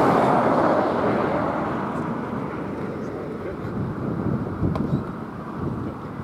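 Thunder rumbling, loudest at the start and fading away over several seconds, with a brief knock near the end.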